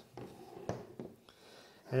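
Plastic handle housing of a Batcaddy X3 electric golf caddy being pulled apart into two halves by hand: a few light plastic clicks and knocks, the clearest a little under a second in.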